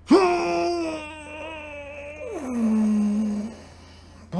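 A man's long, drawn-out vocal cry held on one pitch for about two seconds, then dropping to a lower note for about a second more.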